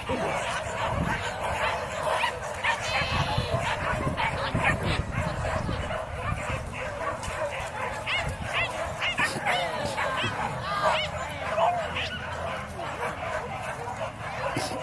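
Hunting dogs yipping and barking in the chase, many short high calls overlapping, thickest about three seconds in and again in the second half.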